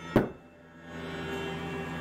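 A fixed-blade knife stabbed point-first into a wooden tabletop: one sharp, loud thud just after the start. About a second in, a steady low hum with several held tones comes in.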